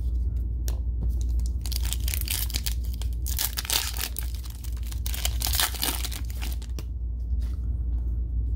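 Hands tearing open the foil wrapper of a Panini Mosaic basketball card cello pack. It crinkles and rips from about a second and a half in until near the end, after a few light clicks of cards being handled.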